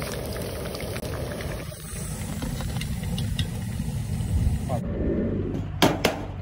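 Soya chunks deep-frying in a wok of hot oil: a steady sizzle with a low rumble beneath it. It cuts off a little before the end, and a knife strikes once on a wooden chopping board just before the end.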